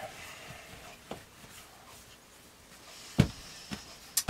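Faint rubbing of hands rolling soft bread dough into ropes on a wooden countertop, with one sharp thump about three seconds in.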